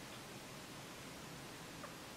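Faint, steady background hiss with no distinct event, apart from one tiny brief sound near the end.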